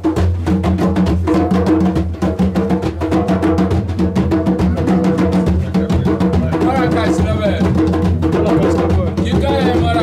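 Djembe hand drums played together in a fast, steady, interlocking rhythm of open and slap strokes, with a drum also struck with a wooden stick.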